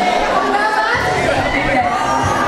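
Speech: a woman talking into a microphone, with crowd chatter behind her.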